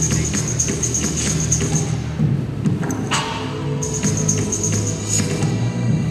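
Electronic dance track mixed live from looped beats, bass and melody, over a hall PA. A steady bass line runs under a pulsing high percussion pattern, which drops out briefly about halfway through as a short noise swell comes in.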